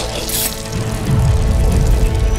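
Dramatic film score music under fight sound effects, with a brief hissing rush about half a second in and a low swell in the second half.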